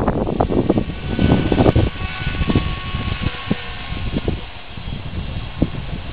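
Gusty wind buffeting the microphone, heaviest in the first second, over a faint steady whine from a helicopter flying overhead.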